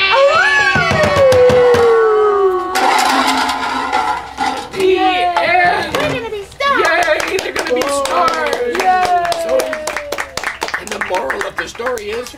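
Wordless vocal howls and wails from the puppeteers voicing the animal band, several voices sliding in long falling glides. A burst of rasping noise comes in about three seconds in.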